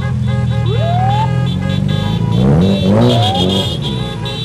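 Cars in a motorcade sounding their horns together in long steady blasts. A police siren gives a short rising whoop about a second in, and an engine revs up and down near the end.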